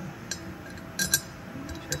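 Steel bolt clinking against a Honda S2000 aluminum differential cover as it is fitted into its bolt hole by hand: a few light metallic clinks, two loud ones close together near the middle.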